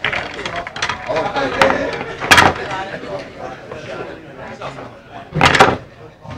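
Pool balls clacking together as they are gathered into a triangle rack, with two loud knocks, one a little over two seconds in and a longer one near the end.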